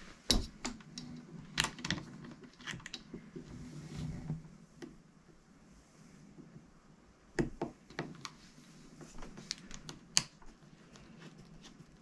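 Scattered clicks and light taps of small-parts handling: a metal cable tether's eyelet being set over a screw in a plastic device case and the screw being turned with a small screwdriver. The sharpest clicks come about a third of a second in, around seven and a half seconds in, and about ten seconds in.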